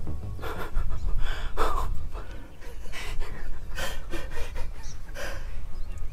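A man breathing hard in about six short, noisy breaths over a steady low rumble.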